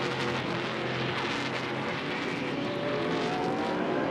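Race truck's V8 engine running hard on track, its pitch climbing in the second half as it accelerates.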